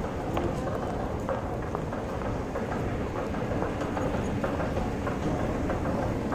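Close handling noise: rustling and small irregular clicks and knocks as a hand rummages in a bag while the phone's microphone is jostled, over a steady low rumble.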